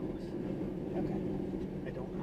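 Steady road and engine noise of a car driving at highway speed, heard from inside the cabin.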